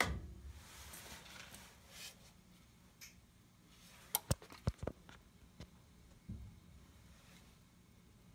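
A sharp click as a switch is flipped, then faint rustling, a quick run of about five sharp clicks between four and five seconds in, and a dull thump a little after six seconds.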